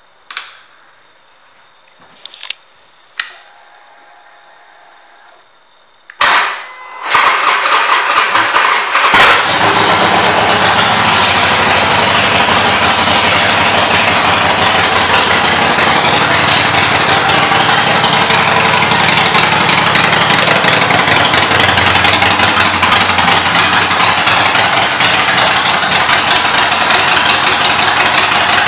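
Harley-Davidson Forty-Eight's 1200 cc air-cooled V-twin, fitted with Vance & Hines pipes, being started. A few sharp clicks and a short hum come first. About six seconds in, the starter cranks and the engine catches with a brief surge, then settles into a loud, steady idle.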